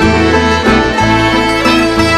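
Instrumental folk music: accordion and fiddle carry the tune over strummed guitar and a steady bass line, with no singing.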